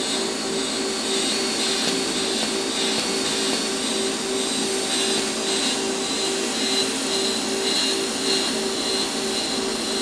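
TIG welding arc from an AHP Alpha-TIG 200X, running on thin-gauge sheet metal with a steady hiss and a hum that pulses about three times a second.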